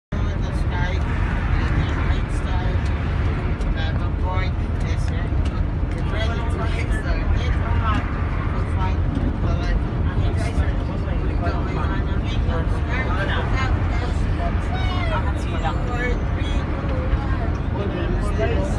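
Steady low rumble of a bus's engine and tyres at highway speed, heard inside the cabin, with people talking indistinctly over it.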